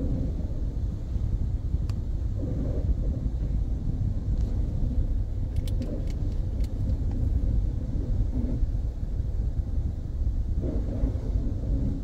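Steady low rumble of an automatic car wash, heard muffled from inside the car's cabin, with a few faint clicks and taps.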